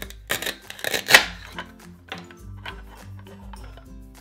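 Hook-and-loop (Velcro) pads of a toy cutting fruit tearing apart as it is sliced: two short rips, one about half a second in and a louder one around one second. Light background music plays throughout.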